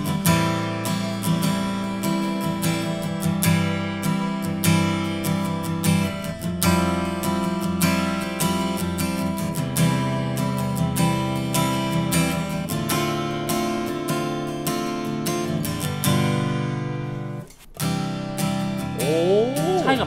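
McPherson Sable carbon-fibre grand auditorium acoustic guitar with a basket-weave top, strummed in steady chords and heard unplugged. After a brief break near the end, the same guitar model with a honeycomb top is strummed.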